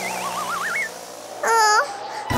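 Cartoon sound effect of two rising, wavering glides in the first second, followed about one and a half seconds in by a short pitched sound that dips and rises, like a brief surprised vocal 'ooh'.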